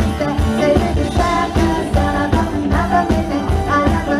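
Live pop music played through a stage sound system: a band with a steady, regular beat and a woman singing the lead melody into a microphone.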